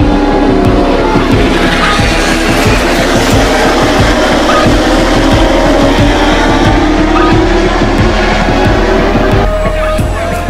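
MotoGP racing motorcycle engines at high revs, their pitch sliding up and down as the bikes accelerate and brake, mixed with background music that has a steady beat.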